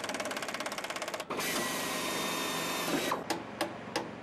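A hand-held power tool worked on a metal aircraft panel: a fast, even rattle for just over a second, then a steadier rushing run for about two seconds, then a few clicks.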